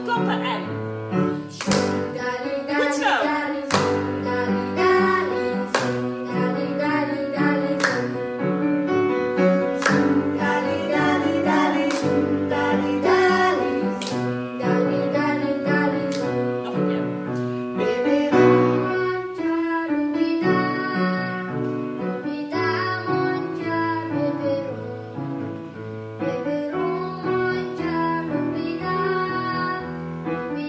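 A song sung by children and a woman to piano accompaniment, with a hand clap about every two seconds through the first half.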